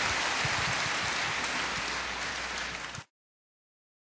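Audience applauding, easing slightly, then cut off abruptly about three seconds in.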